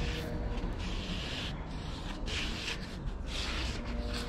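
Hands gripping and turning a foam mountain-bike tyre insert, a soft rubbing rustle that comes and goes several times over a steady low rumble.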